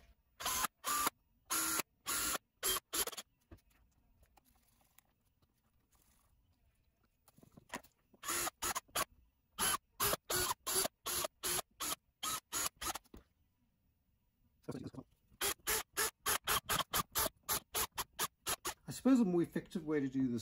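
Cordless drill run in quick short bursts, several a second, as it bores holes through a thin FEP film through the holes of a vat frame. The bursts come in three runs with pauses after the first and second.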